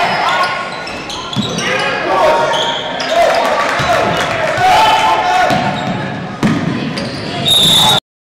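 Live game sound from a basketball game in a gym: voices shouting on and off while a basketball is dribbled on the hardwood court.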